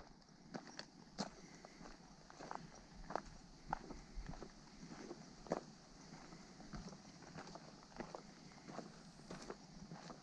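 Faint footsteps of a person walking on a dry dirt trail strewn with leaf litter and bark, a short crunch about every half second to second.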